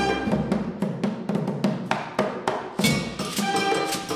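Live band of saxophones, trumpet, drum kit and percussion playing a Beninese brass-band tune. Here a percussion groove leads with sharp hits about three times a second, and held notes from the band's pitched instruments come back in about three seconds in.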